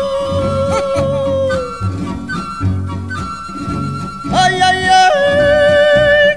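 Mexican ranchera song: a wordless falsetto voice holds long high notes over guitar accompaniment. About four seconds in, a louder falsetto note leaps up, then steps back down about a second later.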